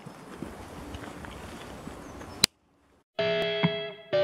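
Steady outdoor background noise that cuts off with a click about two and a half seconds in, then a brief silence. Near the end, background music starts: a pop song with guitar chords.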